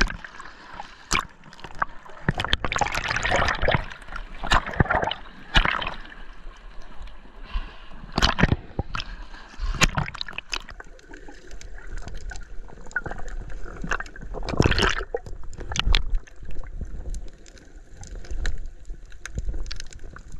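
Underwater churning of a snorkeler's swim fins kicking: bubbles and sloshing water in irregular surges, with scattered sharp knocks.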